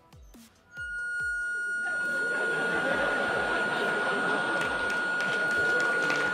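A single high harmonica note held steadily for about six seconds, a one-note "song" imitating the ringing in the ears the day after a rock concert. About two seconds in, audience laughter rises underneath it.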